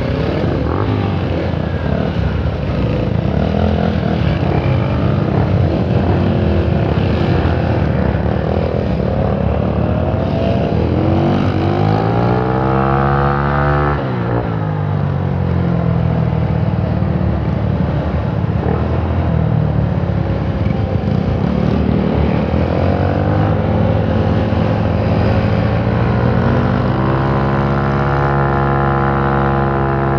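Four-stroke scooter engine pulling away and accelerating, amid other motorcycle engines at first. Its pitch climbs, drops sharply about halfway through, then rises again and holds steady near the end.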